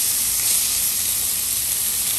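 Thick-cut bacon sizzling steadily on a hot flat-top griddle.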